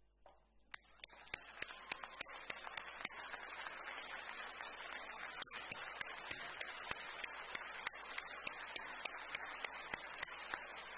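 Large crowd applauding: the clapping starts about a second in, swells over the next two seconds and then holds steady, with single sharp claps standing out above the rest.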